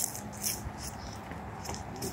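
Footsteps on gravel, a few short steps about half a second apart, over a low rumble.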